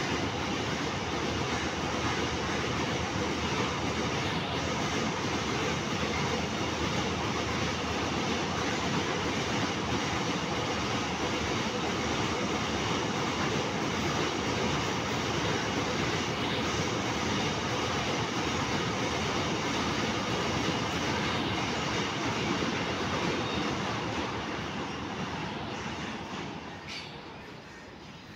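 Goods train's covered wagons rolling past on steel rails: steady wheel-on-rail noise that begins to fade about two seconds before the end.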